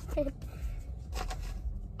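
A short laugh, then soft rustling and handling noises over a steady low rumble.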